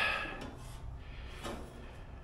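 Quiet room tone with faint handling noises and no clear, distinct event.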